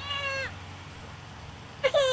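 A toddler's short, high-pitched whimpering cry that falls in pitch at the end, then a louder cry starting near the end.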